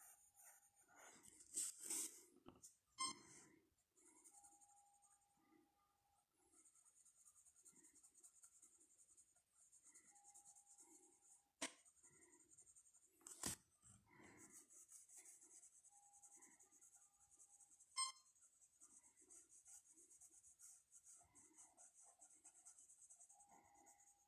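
Graphite pencil scratching on paper in quick back-and-forth shading strokes, faint, with a few sharp ticks of the pencil against the page.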